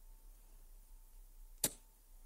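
Quiet pause with faint room tone and a thin steady tone, broken by a single sharp click about one and a half seconds in.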